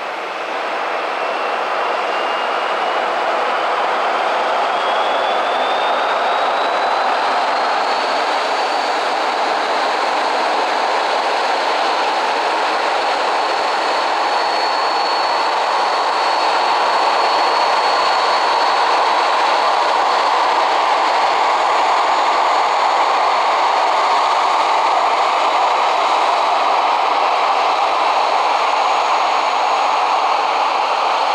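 Boeing 737-800's CFM56-7B turbofan engines spooling up for the takeoff roll: a thin whine rises in pitch over the first several seconds and then holds steady above a loud, growing rush of jet noise.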